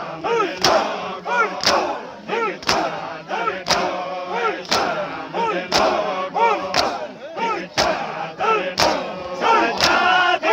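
A crowd of mourners performing matam: men strike their chests with open hands in unison, about once a second, ten strikes in all. Each strike is answered by loud massed chanting from many male voices.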